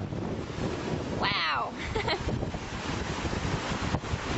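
Strong wind buffeting the microphone over rough, breaking seas rushing past a sailing yacht, with the wind gusting around 40 knots. A short falling pitched sound comes about a second in.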